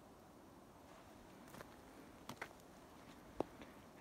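Near silence: faint outdoor background with a few brief soft clicks, two close together a little after two seconds and a sharper one near the end.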